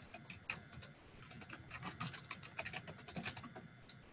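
Typing on a computer keyboard: a quick, uneven run of faint keystroke clicks.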